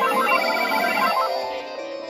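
Several landline and cordless telephones ringing at once, their electronic ringtones overlapping. A fast run of short, high beeping notes sounds over the others for about the first second.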